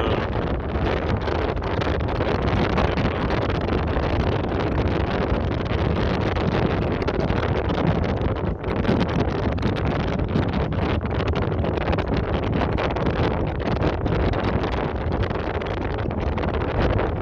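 Steady wind rushing on the microphone aboard a moving river boat, over the low running of the boat's engine and water along the hull.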